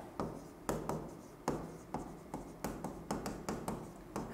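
Stylus writing on an interactive smart board: irregular light taps and short scratches as the letters are written.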